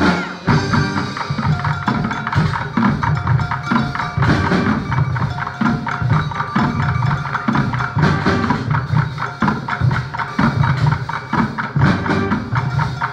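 Live percussion music played on plastic buckets and trash cans, a fast even rhythm of hand-struck strokes, with some held pitched notes from the band underneath.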